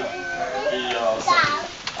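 Children's voices talking in a crowded classroom, with a higher-pitched child's call about one and a half seconds in.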